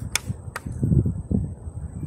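Handling noise from fingers gripping and shifting on the plastic case of a Prunus J-160 radio: two sharp clicks in the first half-second, then an irregular low rumble.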